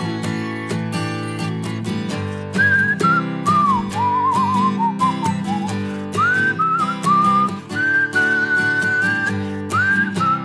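Instrumental break of a live folk song: strummed acoustic guitar and drums keep a steady beat, and about two and a half seconds in a whistled melody comes in over them, gliding and wavering between notes.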